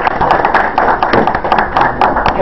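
Audience applauding: many hands clapping at once in a steady patter of claps.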